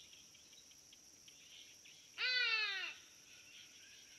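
A baboon gives a single loud, wavering cry about two seconds in, its pitch jumping up and then sliding down over under a second.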